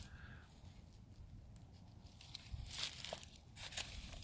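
Faint rustling, with a few soft crackles in the second half.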